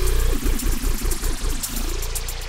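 Electronic music: a buzzing synthesizer or sampler sound that wavers rapidly in pitch, over a sustained low bass note.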